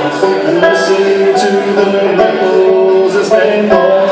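Solo banjo picking a slow ballad melody, plucked notes changing step by step in an instrumental passage.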